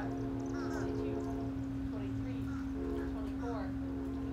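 A steady low hum with a few steady higher tones, and short chirping calls that rise and fall over it, scattered throughout.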